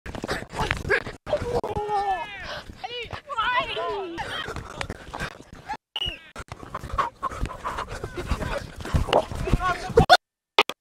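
Raised voices of players shouting and calling out on a football pitch, in short clips joined by abrupt cuts, with the loudest, most pitch-swooping shouts about two to four seconds in.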